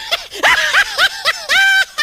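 High-pitched laughter in a fast run of short laughs, about six a second, ending in one held squealing note near the end.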